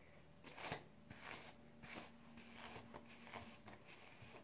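Faint, soft rustling of hands twisting and handling wet hair, a few brief swishes spread over the few seconds.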